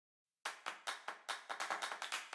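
Hand claps in a beat, about five a second, starting about half a second in and quickening near the end.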